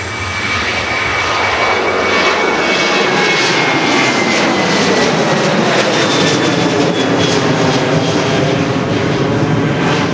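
Twin turbofan engines of an ANA Boeing 737 at takeoff power as the jet lifts off and climbs away: a loud, steady rush of engine noise with a high whine that glides slowly down in pitch as the aircraft passes.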